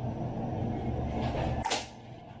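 A single semi-auto shot from a G&G SMC9 airsoft gun, a sharp brief crack about 1.7 seconds in as the BB passes through a chronograph that reads about 336 fps, over a steady low background rumble.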